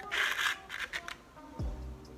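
Brief crackling rustle of a false-eyelash box and its plastic tray being handled and opened, with smaller scratchy handling sounds after it. Background music comes in near the end with a deep kick-drum beat.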